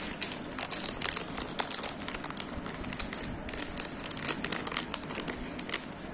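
Bubble wrap and plastic packaging crinkling as it is handled, in many small, irregular crackles.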